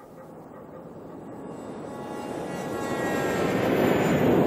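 A dramatic swell in the soundtrack: a dense, rushing crescendo that grows steadily louder, building to the episode's end.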